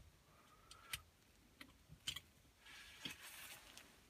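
Near silence, with a few faint clicks and a soft rustle near the end as a plastic drinking-bird toy is handled and seated on the pivot of its stand.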